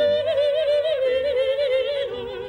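Female operatic singing: a long held note with wide vibrato that dips slightly lower about halfway through.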